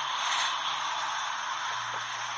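Steady hiss and rustling of a muffled, accidentally recorded phone voice message, with a faint low hum underneath that grows slightly near the end.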